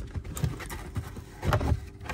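A pleated cabin air filter being pushed by hand into the plastic filter housing of a Tesla Model Y: irregular scraping and light knocks, the loudest about a second and a half in.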